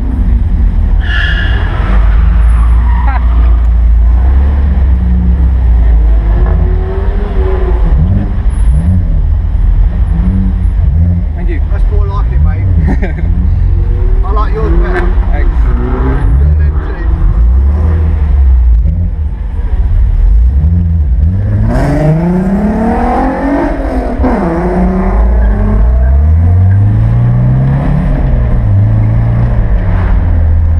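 MGB GT's four-cylinder engine heard from inside the cabin, running at low revs in slow traffic, then rising sharply in pitch twice in the second half as the car accelerates through the gears.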